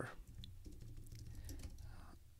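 Typing on a computer keyboard: a faint, irregular run of key clicks.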